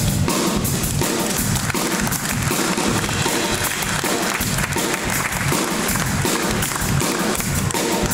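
Live blues-soul band playing: a drum kit keeping a steady beat under electric guitars.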